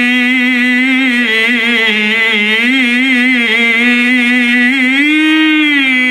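A male qari reciting the Qur'an in the melodic tilawah style through a microphone, drawing out one long vowel without a break. The note wavers in ornamental turns, then swells up in pitch about five seconds in and settles back.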